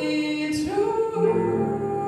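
Female vocalist singing a jazz ballad live with piano accompaniment; a held sung note bends upward about half a second in.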